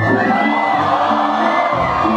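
Dance music playing loud through the venue's sound system, with an audience cheering and whooping over it.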